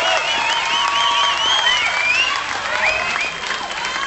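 Concert audience applauding and cheering, with high whistles and shouts gliding up and down over the clapping. It eases off slightly in the last second or so.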